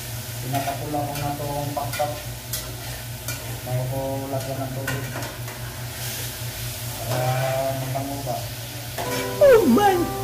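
Chicken pieces sautéing in a stainless steel pot, stirred with a wooden spatula: a steady sizzle with scattered scrapes and clicks of the spatula against the pot. Near the end a loud sound effect with a swooping pitch cuts in.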